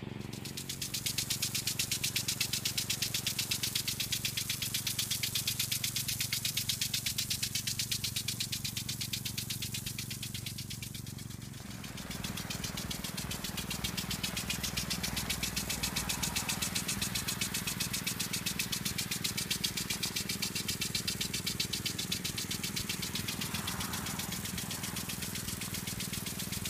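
Impact sprinkler watering a field, its arm ticking rapidly and evenly over the hiss of the spray, with a steady low engine hum underneath. The ticking dips briefly about eleven seconds in, then carries on.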